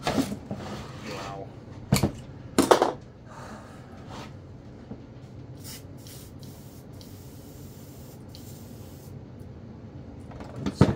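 A few loud knocks and clunks of metal parts being handled on a workbench. Then a WD-40 aerosol can sprays into a seized chainsaw engine to free it: a few short hisses, then a longer spray of about two seconds.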